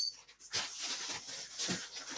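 Red 260 latex modelling balloons squeaking and rubbing against each other and the hands as they are handled and twisted, in a run of short, irregular squeaks.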